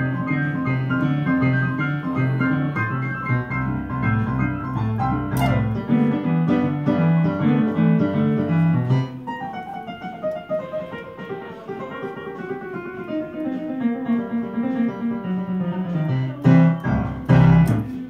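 Ragtime piece played on a Nord Stage 2 stage keyboard with a piano sound: a steady bass rhythm under the melody for the first half, then the bass drops out and a long run of notes steps downward, ending in loud closing chords near the end.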